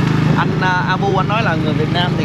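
Motorbike engine running steadily under way, a low even hum, with a man's voice talking over it from shortly after the start.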